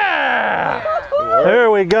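Men shouting and whooping excitedly, one long call falling in pitch at the start, with a single sharp crack near the end.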